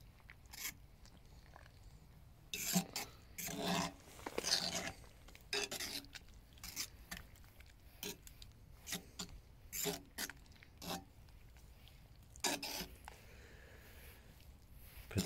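Metal fork scraping and knocking against the inside of a cast-iron pot while stirring a thick stew: irregular short scrapes, with a run of longer scrapes about three to five seconds in.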